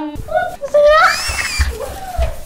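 A woman's high-pitched playful scream, rising in pitch and lasting about a second, with short vocal sounds before it and dull low thumps under it.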